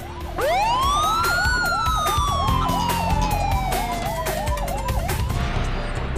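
Siren sound effect: a fast warbling yelp, with one long sweep laid over it that rises for about a second and then falls slowly, set over music with a beat.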